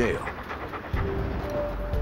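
A tracking dog panting with its mouth open, with faint background music.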